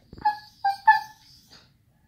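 Siberian husky making three short, high-pitched whining vocal sounds in quick succession within the first second, its 'talkative' reply while begging for a treat.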